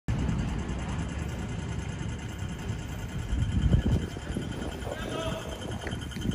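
City street ambience at a pedestrian crossing: a steady low rumble with people's voices nearby, loudest about three and a half seconds in.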